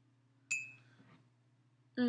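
A single light clink of a ceramic mug being picked up, about half a second in, with a short high ring that fades, followed by a couple of faint knocks.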